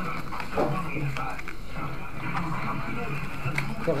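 Indistinct voices talking in the background of a small room, with a couple of light clicks about half a second in and near the end.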